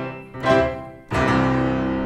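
Grand piano played: a chord struck about half a second in that dies away, then another chord struck about a second in and held.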